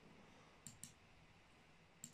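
Two quick, faint clicks at a computer a little under a second in, otherwise near-silent room tone.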